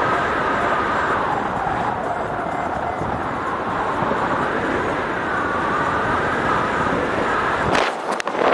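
Steady rush of airflow over the camera microphone during a paraglider flight, with a brief dip and a few sharp clicks near the end.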